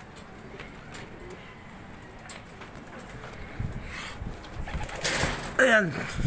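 Pigeons cooing in a loft, low, soft repeated coos coming in during the second half.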